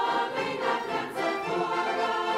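A large choir singing in harmony, many voices holding chords together.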